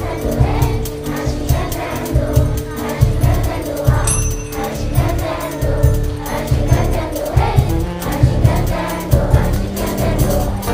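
Children's choir singing a Brazilian song with a live band, drum kit and congas keeping a steady beat.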